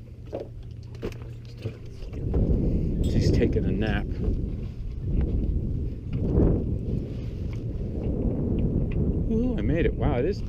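Low rumbling wind and handling noise on a moving camera as a man climbs out of an inflatable dinghy onto a small sailboat. It gets louder about two seconds in, with muffled voices now and then.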